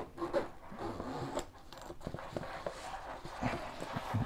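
Faint rustling and light scattered clicks of a polyester laptop backpack being handled and turned over by hand.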